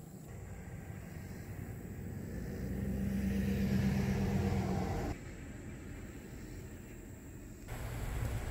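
A road vehicle's engine and tyres, growing steadily louder over a few seconds, then cutting off suddenly about five seconds in.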